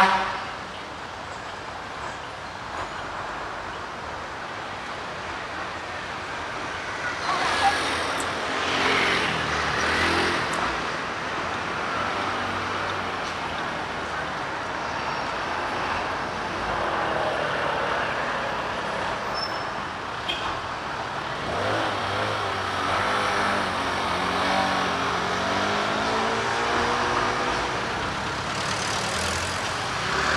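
City street traffic: cars and motor scooters driving past, with a continuous road noise. In the second half, engines rise and fall in pitch as vehicles pull away and pass.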